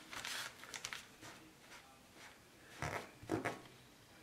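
Fingers and a paper towel rubbing soaked transfer-paper backing off a T-shirt print: a few short scrubbing strokes in the first second, then two louder ones about three seconds in. The wet paper is coming away in little pieces.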